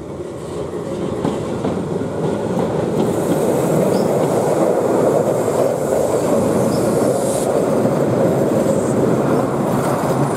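Keihan Ishiyama-Sakamoto Line two-car electric train running on street-running track, approaching and passing close by. The rumble of its wheels on the rails grows louder over the first three seconds, then holds steady, with a few brief faint high wheel squeals.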